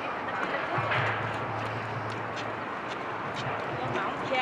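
Outdoor city ambience on a riverside walkway: a steady wash of background noise. A low, steady hum comes in about a second in and fades out near the end, with scattered light ticks over it.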